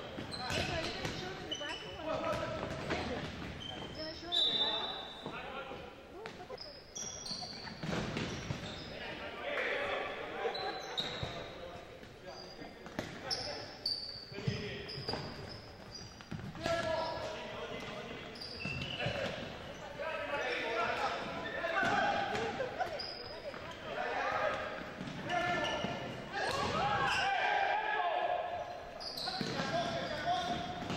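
Futsal game sounds in a large gym: the ball thudding off feet and the hardwood floor, short high sneaker squeaks, and players and spectators shouting, with the hall's echo.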